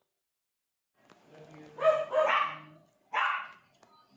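Toy poodle barking: two quick barks close together, then a third about a second later.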